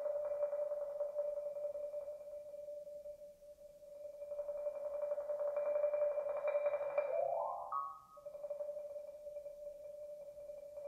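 Concert marimba played with four mallets: a rapid roll on one note that fades away and swells back up, a quick rising run of notes about seven seconds in, then the roll resumes softly.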